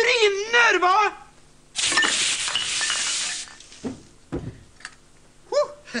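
A loud spray of liquid hissing for about two seconds, starting about two seconds in, with a couple of dull thumps after it.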